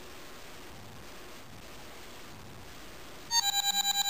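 An original iPhone 2G plays its incoming-message alert tone, a rapid run of pulsing beeps at one pitch that starts about three seconds in, signalling that the picture message has arrived. Before it there is only faint room noise.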